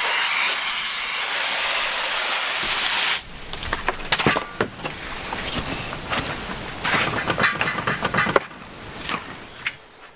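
Water spraying from a garden hose nozzle onto potting soil in a plastic tub, a steady hiss that stops about three seconds in. Then a hand claw scrapes and stirs through the wet soil, with irregular scratches and knocks.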